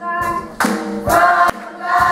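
Youth gospel choir singing in harmony, with two sharp percussive hits on the beat.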